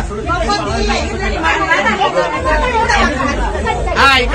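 Several women's voices chattering and talking over one another, with a low hum underneath.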